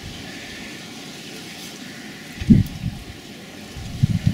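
Steady outdoor hiss with a short low buffet of wind on the microphone about two and a half seconds in.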